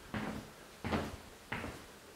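Footsteps on a bare floor: three steps about two-thirds of a second apart, each a short knock.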